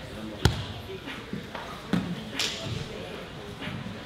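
A few sharp thuds and slaps of bodies and limbs hitting foam grappling mats during a jiu-jitsu roll, the loudest about half a second in, over indistinct voices in the gym.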